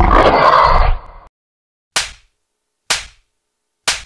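A man's loud, harsh scream that cuts off after about a second, followed by three sharp impact hits about a second apart, each dying away quickly.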